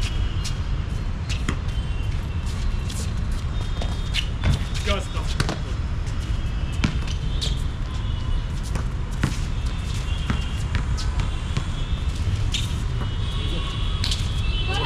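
Basketball bouncing on an outdoor hard court, with scattered sharp thuds from dribbles and play, over a steady low rumble.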